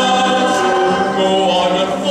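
A stage cast singing together in chorus with musical accompaniment, holding long notes that change about a second in.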